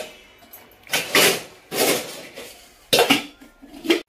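Stainless steel pots and bowls clanking against one another and a metal shelf rack as they are put away, about five sharp metallic clanks, each with a short ring.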